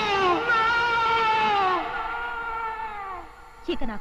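A man's long, high-pitched wailing cry of "No", held and dropping in pitch three times before it fades. Brief speech follows near the end.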